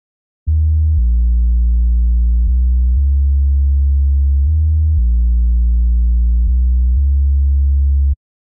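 Deep synth bass line of a reese bass with a sub bass beneath it, played on its own: held low notes that change pitch every half second to two seconds, with nothing above the low range. It starts about half a second in.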